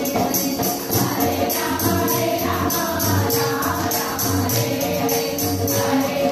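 A group chanting devotional names together in a continuous devotional chant (namajapam), kept to a steady, quick jingling beat.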